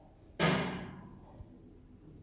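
Stainless steel lift doors shutting with a single heavy thud that rings briefly, followed by a faint knock about a second later.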